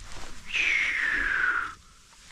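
Fishing line paying out from a spinning reel and through the rod guides during a cast, a hissing whine that falls steadily in pitch for just over a second as the lure flies out.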